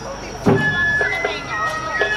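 Awa Odori festival band music: bamboo flutes holding high notes and trilling, over a heavy drum stroke about half a second in and sharp metallic beats.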